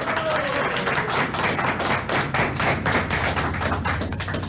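A small crowd applauding, with dense, steady clapping throughout.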